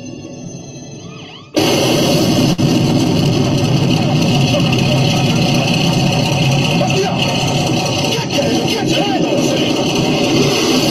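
Loud, steady rushing noise from footage filmed on a boat at sea: wind on the microphone with engine and water noise. It cuts in suddenly about a second and a half in, after a quieter passage.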